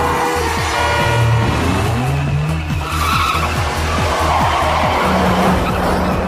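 Film car-chase soundtrack: a car engine running hard and tyres skidding, loudest about halfway through, over a pulsing music score.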